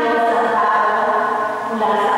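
Slow sung liturgical chant, with long held notes in a woman's voice range.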